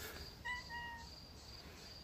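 A cat's single short meow, about half a second long, with faint high chirping repeating steadily behind it.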